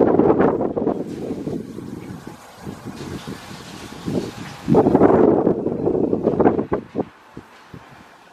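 Wind blowing across the microphone in gusts. It is loud at the start and eases off, then a second strong gust comes about five seconds in and dies away shortly before the end.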